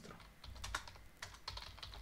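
Computer keyboard typing: a quick, irregular run of key clicks as a line of text is typed.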